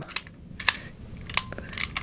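Spring-loaded red plastic claws on a Hasbro BladeBuilders Sith lightsaber accessory being folded by hand: a handful of sharp plastic clicks over faint handling rustle.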